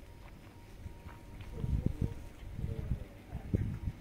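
Footsteps on a rocky, stony path: irregular heavy steps, strongest about two seconds in and again near the end, with faint voices in the background.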